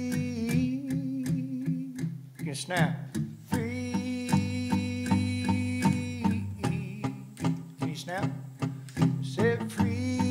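Acoustic guitars strummed in a steady rhythm during an instrumental break of a country song, under a sustained lead melody. The melody has notes that slide up and down about three seconds in and again near the end.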